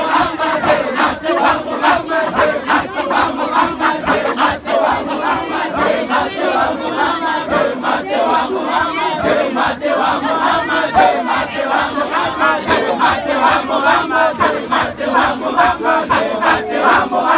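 Crowd of men and boys chanting together in a dahira, a Muslim devotional chant, many voices overlapping without a break, with frequent sharp beats running through it.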